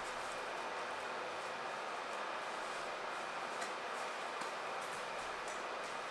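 Steady background noise from an oven running its self-cleaning cycle.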